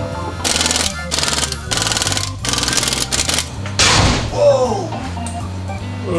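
Pneumatic impact wrench rattling in several short bursts, over background music.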